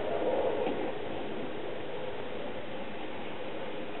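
Low, steady background hiss of room tone with no distinct event, with a faint hum in the first second.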